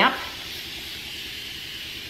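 A spray bottle misting water onto a burlap-like fabric lampshade to dampen it before painting: one steady hiss lasting about two seconds.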